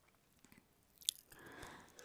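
Faint spatula stirring of frying onions in a non-stick pan: a single light click about a second in, then a brief soft scrape.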